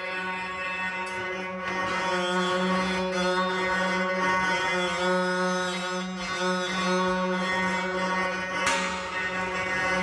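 Grand piano strings bowed with nylon threads drawn across them: a steady, sustained drone on one low pitch, rich in overtones, with higher tones wavering above it in the middle.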